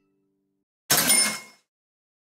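Cash-register "cha-ching" sound effect: starts suddenly about a second in, with a few high ringing tones, and dies away within under a second.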